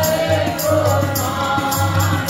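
Sikh kirtan: a harmonium and tabla accompany a group of voices singing together, with the tabla keeping a steady beat of deep bass strokes and sharper high strikes.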